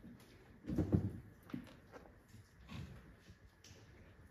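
Quiet hall ambience with a few scattered small noises from a seated audience, the loudest a brief stir about a second in.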